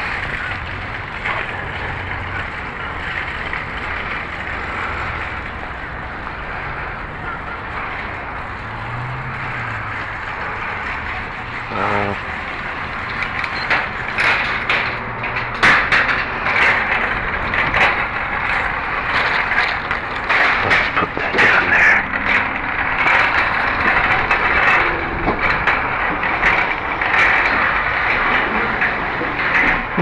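Shopping cart being pushed, its wheels rolling and rattling over pavement with a steady rumble, turning into a louder, busier clatter of knocks from about halfway through.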